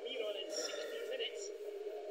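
Faint background speech from a television football broadcast, match commentary running under the room.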